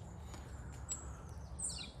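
Faint woodland ambience: a steady low rumble with a brief high bird chirp about a second in and another short high call near the end.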